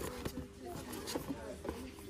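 Indistinct voices in a shop, with a few short sharp clicks and taps.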